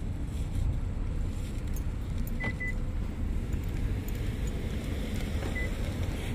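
Steady low outdoor rumble while a car's key fob buttons are pressed and held for a remote start. A click and two short high beeps come about two and a half seconds in, and one more short beep near the end.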